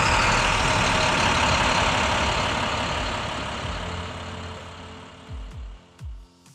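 A diesel snowplow dump truck running on a wet road, its engine rumble and a broad hiss loud at first and fading away over the last few seconds. Music comes in near the end.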